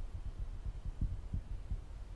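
Low, deep rumbling drone with irregular throbbing pulses, part of the film's ambient score.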